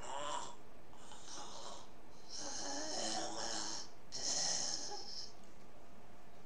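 A man's rasping, snore-like breathing through an open mouth, four drawn-out breaths, imitating the labored breathing of a dying person.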